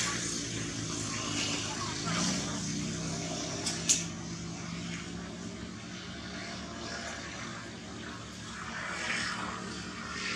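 A steady low engine drone in the background, with a single sharp click about four seconds in.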